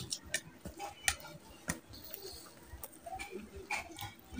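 Eating by hand: scattered wet clicks and smacks of fingers squeezing rice and oily curry on a steel plate, and of the mouth chewing.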